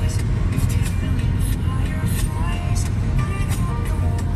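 Steady low road rumble inside a moving car's cabin at highway speed, with music playing over it.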